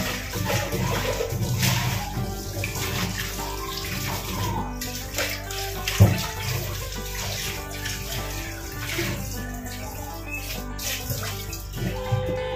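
A kitchen tap running while dishes are washed in the sink, with clinks of crockery and one sharp knock about six seconds in. Background music plays underneath.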